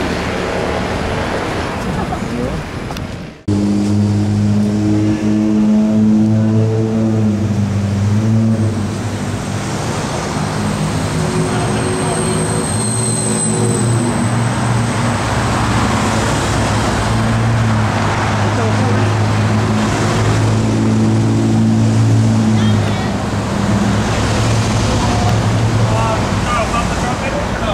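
Street traffic noise, then a sudden cut about three seconds in to the steady low hum of a nearby vehicle engine running, holding almost one pitch with small shifts.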